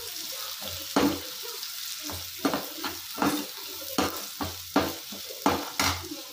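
Chopped onions sizzling in oil in a pan while a steel spoon stirs them, scraping and knocking against the pan in about a dozen irregular strokes over a steady frying hiss.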